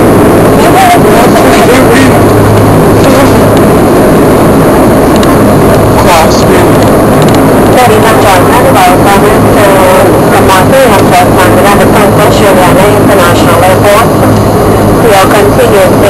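Dash 8-300 turboprop engines droning steadily, heard from inside the cabin, with voices talking over the drone.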